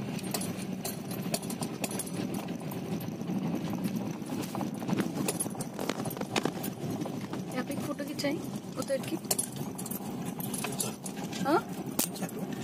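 Car cabin noise while driving slowly over a rough unpaved gravel track: a steady low road rumble with many irregular clicks and knocks from the tyres on loose stones and the car body rattling.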